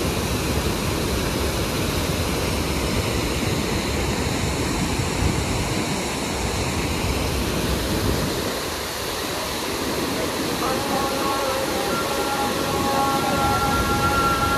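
Floodwater overflowing a river weir-cum-causeway, pouring through its spillway openings as a loud, steady rush of churning white water. About three-quarters of the way through, music with long held notes comes in over the water.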